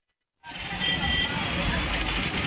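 Silence for about the first half second, then outdoor street noise comes in: indistinct voices of a crowd over traffic.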